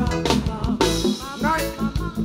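Live reggae band playing: a steady drum kit and bass beat with keyboard, and women's voices singing again about one and a half seconds in.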